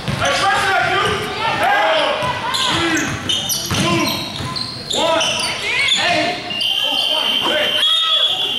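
Basketball game sounds in a large, echoing gym: a basketball bouncing on the hardwood court, many short sneaker squeaks, and players' voices calling out. A steady high tone starts near the end.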